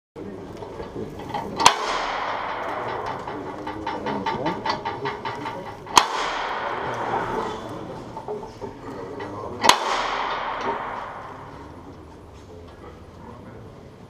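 Metal llamador (door-knocker) on the front of a Holy Week paso struck three times, about four seconds apart, each knock ringing out and echoing through the hall. These are the capataz's knocks signalling the costaleros beneath the paso.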